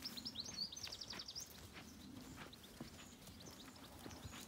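A small songbird singing a quick trill of high repeated notes in the first second and a half, faint against the outdoor background, with scattered light taps and knocks through the rest.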